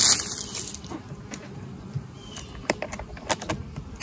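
Knocks and sharp clicks from a plastic beehive lid being handled: one heavier knock at the start, then a few scattered clicks.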